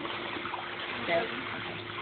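Swimming-pool water sloshing and lapping as an adult wades with a toddler in her arms, over a low steady hum. A woman says "Go" about a second in.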